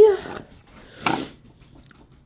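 A woman's drawn-out word trails off. About a second in there is one short sniff from someone with a head cold.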